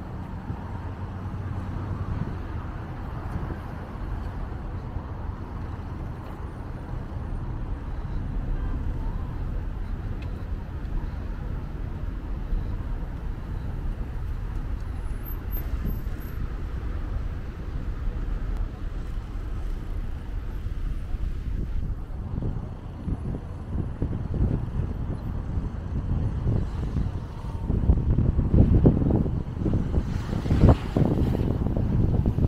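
Steady road traffic noise from cars passing on a multi-lane road alongside, with wind buffeting the microphone in gusts near the end.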